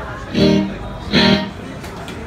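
Electric guitar chords strummed in two short, separate stabs about a second apart, as between songs rather than in a running tune.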